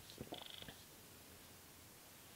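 Near silence: room tone, with a few faint, brief small noises in the first second.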